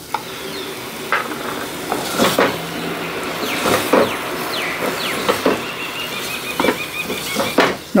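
Spiced paste sizzling in a clay pot on the stove while a wooden spoon stirs it, with a few scrapes and knocks of the spoon against the pot.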